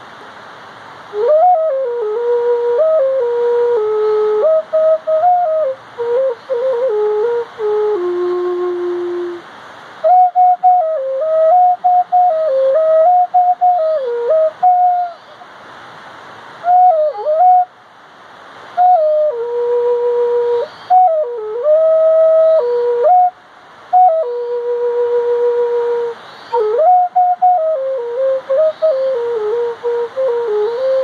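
Solo flute playing a slow melody in phrases of a few seconds, with short pauses for breath between them. The notes slide and bend in pitch at their starts and ends, and a breathy hiss runs under the tone.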